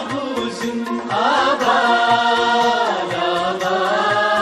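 A college anthem (tarana) being sung with music: a voice holding long, wavering notes over a steady low beat.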